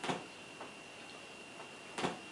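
Wall clock ticking in a quiet room: two sharp ticks about two seconds apart, over faint room tone with a thin, steady high-pitched whine.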